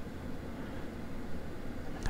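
Quiet, steady room noise with a low hum and no distinct events.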